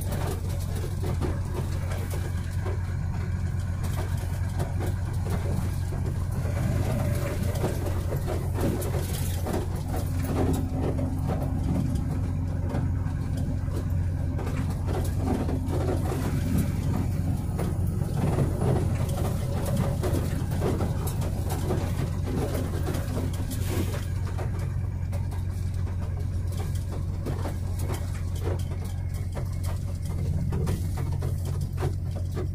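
Truck running along the road, heard from inside the cab as a steady low drone of engine and road noise that is loud in the cab, a "barulhão". A faint steady higher tone joins in for several seconds in the middle.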